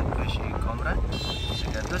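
Steady low rumble of a car's engine and road noise heard from inside the cabin. A high, even tone sounds for most of a second, starting about a second in.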